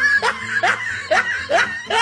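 A man laughing in short rising bursts, about two a second.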